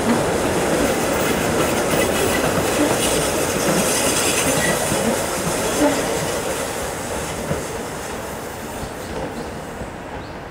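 A Keihan Keishin Line electric train running round a sharp curve, its wheels rumbling on the rails. The sound fades gradually over the last few seconds.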